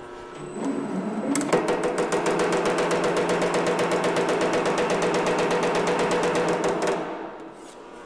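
Power hammer spinning up about half a second in, then striking in a rapid, even run of blows for about five and a half seconds as sheet metal is fed through the shrinking dies to put in a tuck. The blows stop shortly before the end and the machine winds down.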